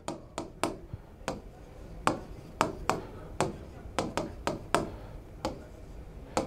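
Pen tapping and clicking against a writing board while short strokes are drawn, about a dozen sharp taps at an irregular pace.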